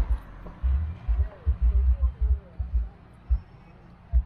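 Wind buffeting the microphone of a handheld phone in irregular low thumps, several a second at times.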